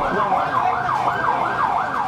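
Emergency vehicle siren sounding a fast yelp, its pitch sweeping up and down about three times a second.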